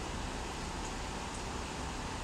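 Steady background noise: an even hiss with a low hum underneath, unchanging throughout.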